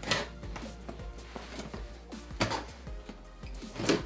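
Scissors cutting along the packing tape on a cardboard box, with three sharp rips of tape and card, over background music.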